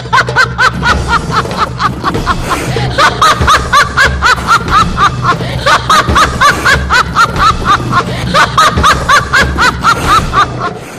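Recorded theatrical villain's laugh, a long rapid run of "ha-ha-ha" syllables with a short break about two seconds in, over a low droning music bed.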